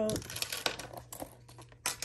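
Small items being taken out of a leather pouch and set down on a wooden tabletop: a string of light clicks and taps, with a sharper knock near the end.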